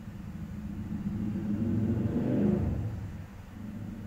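A low rumble that swells, peaks about two and a half seconds in, then fades away.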